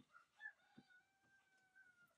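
Faint rooster crowing: one long call held on a steady pitch after a short rising start.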